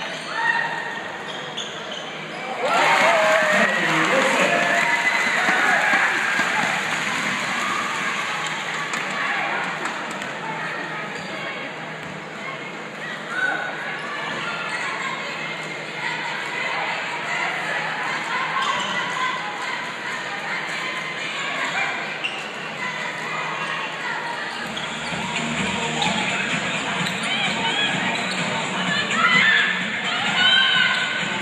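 Live basketball game in a hall: ball bouncing on the court amid crowd chatter and shouts, with a sudden rise in noise about three seconds in.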